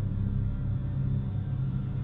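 A low, steady droning rumble that holds evenly throughout, with its weight deep in the bass.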